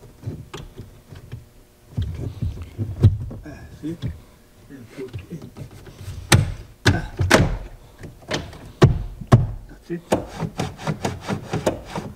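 Plastic B-pillar trim cover being pushed and knocked onto its clips by hand: handling rubs, then several sharp knocks and snaps about halfway through, and a fast run of clicks near the end.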